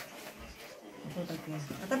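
Speech: an elderly woman's voice in a pause, with a faint drawn-out hesitation sound in the second half before she starts talking again.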